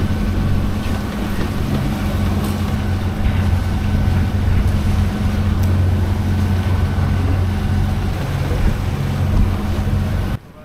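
Steady low hum of a sailing yacht's engine as the boat is under way, with wind and water noise over it.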